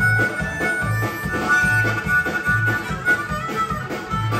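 Harmonica solo played cupped into a vocal microphone, with held, wavering notes, over a live country band's bass guitar and drum kit keeping a steady beat.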